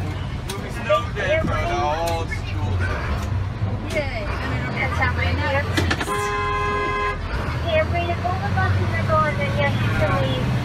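A vehicle horn sounds once, a steady blast of a little over a second, just past the middle. Underneath, a heavy vehicle's engine runs steadily, heard from inside the cab.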